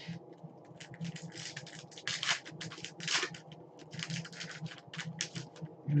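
Trading cards being flipped through and slid against one another by hand: an irregular run of light clicks and swishes, several a second.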